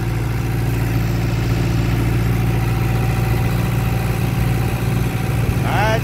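Tractor engine running steadily as the tractor drives along the road, heard from the driver's seat.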